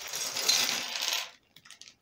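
Small plastic building-block pieces pouring out of a plastic bag and clattering onto a table in a dense rattle for just over a second, with the bag rustling, then stopping suddenly, with a few faint clicks after.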